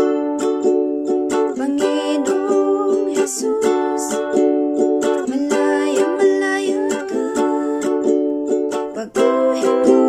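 Ukulele strummed in a steady rhythmic pattern, the chord changing every second or two as it plays through a chord progression.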